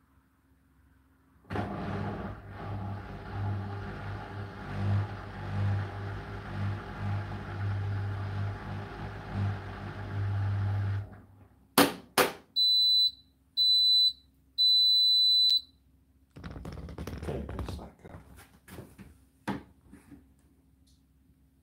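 Hotpoint NSWR843C washing machine finishing its programme: a low motor hum runs for about ten seconds and stops. Two sharp clicks follow, then three high beeps, two short and one longer, signalling the end of the cycle. A rustle and a couple of knocks come near the end.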